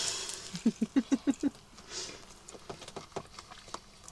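A man biting into and chewing a toast sandwich with egg and crispy smoked tofu, with faint crunching clicks throughout. About a second in comes a quick muffled chuckle with his mouth full.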